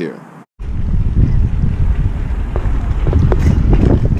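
Wind buffeting the microphone of a GoPro Hero5 Session: a loud, steady low rumble that starts abruptly after a cut about half a second in.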